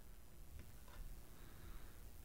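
Faint clicks and a soft rustle from a small cardboard board book being closed and turned over in the hands, two light clicks about half a second in.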